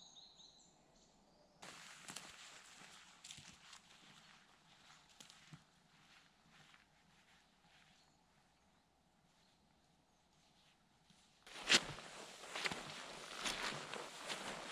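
Footsteps of a walker on a mossy pine-forest floor strewn with needles and twigs. They are faint and irregular at first, then there is a quiet stretch, and near the end they come close and loud with crackling steps.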